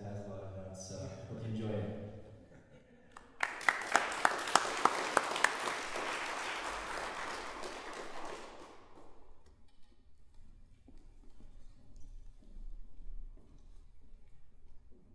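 Small audience applauding for about five seconds, starting a few seconds in, with several sharp individual claps standing out at the start, then dying away into a quiet room.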